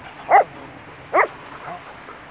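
A dog barking twice while playing: two short, loud barks about a second apart.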